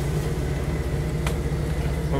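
Jeep engine running steadily at low speed on a rough off-road trail, a low, even drone heard from inside the cab.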